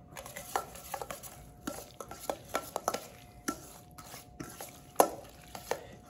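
A metal spoon stirring lobster salad in a stainless steel mixing bowl, folding in mayonnaise, with irregular scrapes and clinks against the bowl. The loudest clink comes about five seconds in.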